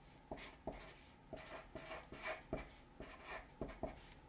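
Marker pen writing on paper: a dozen or so short, faint scratching strokes as numbers and fraction bars are drawn.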